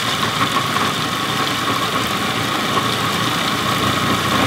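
Breville Sous Chef food processor running steadily, its blade chopping a nut-and-date crust mixture, run a little longer to bring it to a coarse, sand-like crumb.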